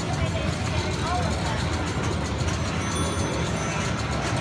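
Steady din of a large hall full of running pinball machines: many games' electronic sounds and people's voices over a low rumble, with a few thin steady high beeps about three seconds in.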